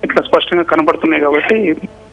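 A man talking over a telephone line, his voice thin and cut off at the top, with a short pause near the end.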